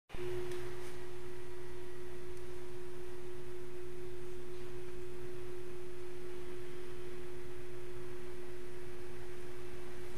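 A single steady pure tone, like a sine wave, held at one mid pitch without change, over a faint low hum.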